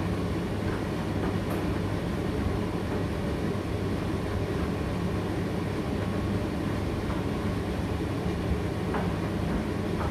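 Indesit IDC8T3 condenser tumble dryer running a drying cycle: a steady rumble from the turning drum and fan motor, with a few faint clicks.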